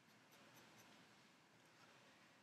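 Faint scratching of a felt-tip marker drawing on paper: several short strokes as lines are hatched in.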